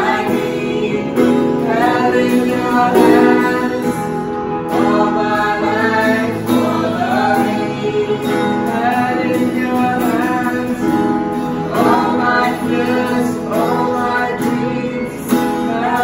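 A contemporary worship song performed live: a man singing over a digital keyboard and a strummed acoustic guitar.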